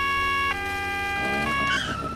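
Cartoon police car's two-tone siren, alternating between a high and a low note about once a second, then sliding down and dying away near the end.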